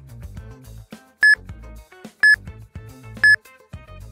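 Interval-timer app beeping three times, one short high beep a second, counting down the final seconds of a rest period before the next round. Background music with a beat plays underneath.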